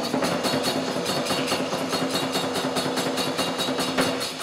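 Nanbu kagura accompaniment: a fast, even beat on taiko drum and small hand cymbals (kane), over a steady held low tone that breaks off at the end.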